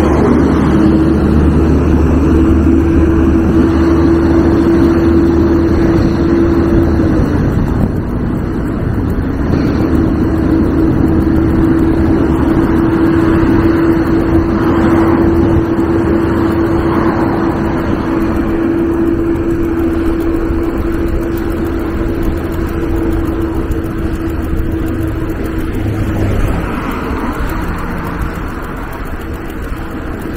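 Road traffic passing close by, with a city bus's engine rumbling low at the start. A steady mid-pitched whine runs through most of it, breaking off about seven seconds in, coming back around ten seconds and stopping near twenty-six seconds.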